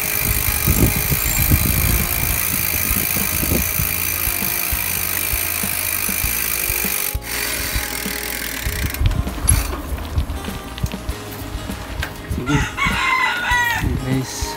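Wind and riding noise on a moving bicycle. Near the end a rooster crows in a few repeated calls.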